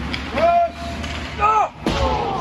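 Two short shouted calls, about a second apart, then a single sharp bang near the end, over a steady low hum in an ice hockey rink.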